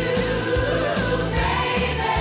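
Student choir singing an upbeat Christmas pop song over a backing track with a steady drum beat and jingle bells.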